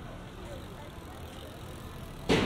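A bicycle riding past close by, over steady street background noise with faint voices.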